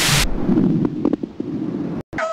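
A sudden loud bang-like burst, then a low rumble with a few scattered crackles that cuts off abruptly near the end: a boom-and-rumble transition sound effect.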